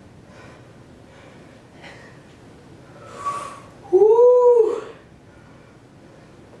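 Breathing of a woman doing bicycle crunches, with a louder breathy exhale about three seconds in. It is followed by a short, high, voiced sound that rises and then falls in pitch, lasting under a second.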